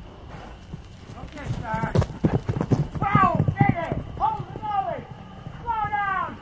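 Horse hooves striking the pasture ground as a horse moves off, with a quick run of thuds about two seconds in. A high-pitched voice talks over them.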